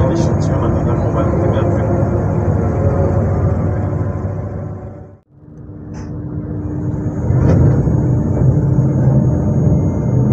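Motor car Z 20834 of an SNCF Z 2N double-deck electric multiple unit, a steady mechanical hum with a few held tones. It fades out to almost nothing about halfway through, then fades back in a couple of seconds later, deeper and heavier.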